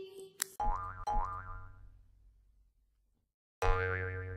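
Two cartoon boing sound effects for a scene change: the first starts about half a second in, its pitch wobbling as it dies away over about a second, and after a silent gap a second one starts near the end.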